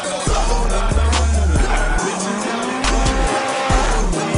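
A drift car sliding, its tyres squealing and its engine revving, mixed with hip hop music that has a heavy bass beat.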